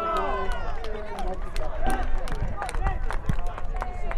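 Several voices at a football match shouting and calling over one another during open play, with many short sharp clicks and knocks throughout.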